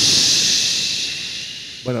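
A person imitating a rain stick with the mouth: one long hissing rush that peaks near the start and slowly fades away over about two seconds.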